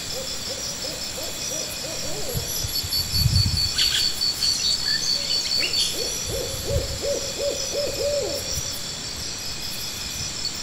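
Two runs of quick hoots, several a second, each note bending up and down. Steady high insect buzzing runs throughout, with a couple of low thumps.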